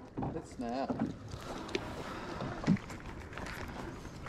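A man muttering a word or two, faint and short, over low outdoor background noise with a few light clicks.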